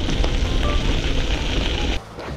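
Wind rushing over the camera microphone and bicycle tyres rolling on a dirt fire road as the bike coasts, a steady rumbling noise.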